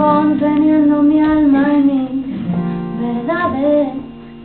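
A woman singing live over her own steel-string acoustic guitar: a long held note for about two seconds, then a shorter sung phrase near the end, with the guitar ringing on underneath.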